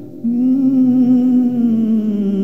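Music: a hummed vocal line holding long, slow notes with vibrato, coming in about a quarter second in after a brief dip, and stepping down slightly near the end.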